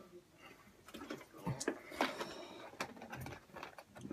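Scattered light knocks and clicks from a container being handled close to the microphone, with faint voice sounds in between.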